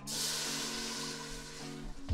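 Chicken bone broth poured into a hot pan of rendered pancetta, sizzling and hissing as it hits the metal to deglaze the cooked-on bits; the hiss starts suddenly and slowly dies down. Background music plays underneath.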